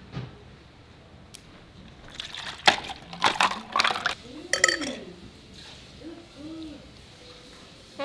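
Red plastic party cups handled, with a cluster of knocks and rustles in the middle as something is poured from one cup into the other.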